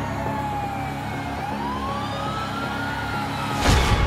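A siren wailing slowly, its pitch falling, rising and falling again, over a steady low hum. A loud hit comes just before the end.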